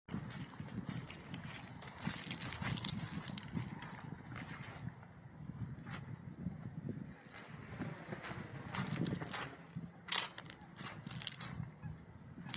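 Wind buffeting an outdoor camera microphone in a steady rush, broken by frequent irregular crackles and rustles.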